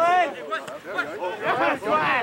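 Men shouting on a rugby pitch, several voices calling over one another with no clear words.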